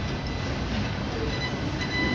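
Steady low rumble and hiss of room noise, with no distinct event.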